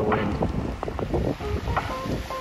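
Wind buffeting the microphone with a low rumble, over small waves washing onto a pebble shore.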